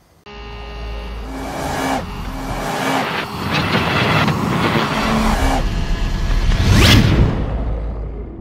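Sound-effect logo sting: a low rumble with faint steady tones starts suddenly and builds, then sweeps up into a loud whoosh about seven seconds in before fading.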